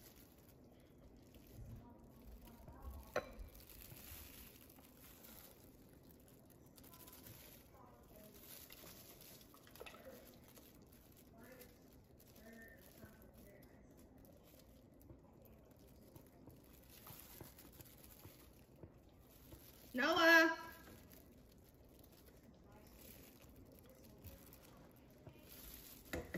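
Faint clinks of a metal ladle against a stainless stockpot as gumbo is ladled into a bowl. About twenty seconds in there is a single short voiced sound.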